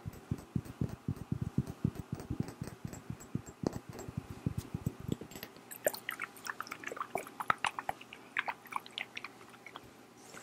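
Fingernails tapping quickly on a faceted glass perfume bottle held against the microphone: dull, close taps for about the first five seconds, then sharper, higher clicks of nails on the glass.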